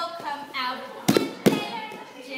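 Voices talking, with two sharp smacks of hands a little after a second in, about half a second apart.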